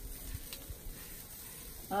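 A few faint clicks of metal tongs on kebab skewers on a gas grill, over a low steady hiss.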